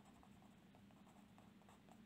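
Faint scratching of a pen writing on paper, barely above room tone.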